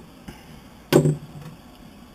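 A single sharp wooden knock about a second in, a plywood block knocking against the other blocks or the board beneath it, with a short hollow ring after it.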